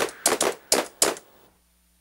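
Teenage Engineering Pocket Operator drum machine played from arcade buttons: a handful of short, sharp percussive hits in quick succession, the last about a second in, then the sound stops.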